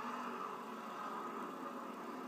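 NASCAR Sprint Cup stock car's V8 engine running steadily at low speed, heard through a television speaker.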